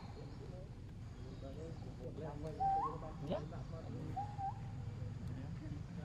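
Baby macaque giving two short, clear coo calls, each a single note that steps up in pitch, about a third of the way in and again about a second and a half later. A steady low background noise runs underneath.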